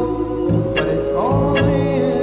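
Music from a 1966 pop single: sustained vocal-harmony chords that move to a new chord about a second in, over bass and a drum beat with two sharp snare-like hits.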